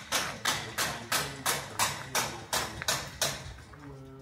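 Background music with a steady percussive beat, about three beats a second, over a held low bass note.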